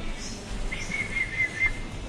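A short, high whistling tone, wavering slightly, that lasts about a second, over a low steady background hum.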